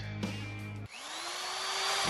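Radio show jingle: a music bed stops about halfway through, and a power-drill sound effect whirs up with a rising whine that then holds steady.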